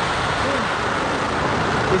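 H3 rocket's liquid-fuel LE-9 main engines firing on the launch pad just after main engine start, a steady rushing noise, with a launch-control voice calling out over it.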